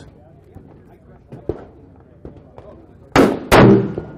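One shot from a Winchester XPR Sporter bolt-action rifle in 6.5 Creedmoor about three seconds in: a sudden loud crack that dies away within about half a second.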